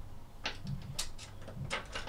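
A handful of light clicks and clinks as metal climbing gear is handled on a practice anchor board, a cam just slotted into place and its clipped kit being adjusted.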